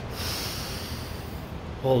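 A man drawing one long, deep breath in, audible as a breathy hiss lasting about a second and a half.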